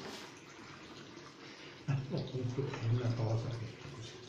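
Faint running water with a steady hiss, typical of a bathroom tap filling water for wetting a shaving brush; about two seconds in, a man's voice talks indistinctly off-microphone.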